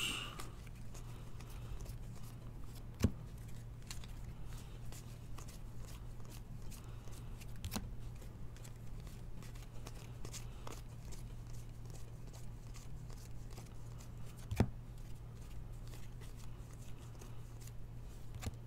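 Glossy trading cards being flipped through by hand: soft clicks and slides of card stock, with two sharper taps about three seconds in and near the end, over a steady low hum.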